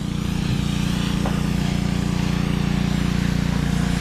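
Small gasoline engine of a pressure washer running steadily at a constant speed.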